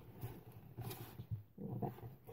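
Faint, uneven low rumbling and rustling as a handmade paper bag is handled and set down on a desk.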